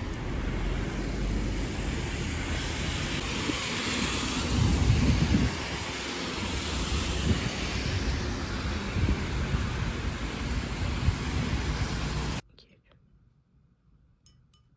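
Steady rain falling on wet city pavement, with traffic on the wet road and low rumbles of wind on the microphone. It cuts off abruptly near the end.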